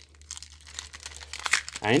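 Foil trading-card booster pack wrapper crinkling as hands tear it open: a run of irregular crackles, until speech begins near the end.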